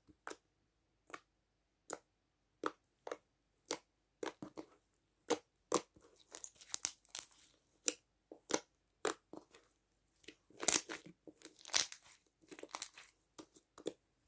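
Glitter slime being pressed and poked with fingers, giving off irregular small clicks and pops: sparse at first, coming faster from about five seconds in and thickest near the end.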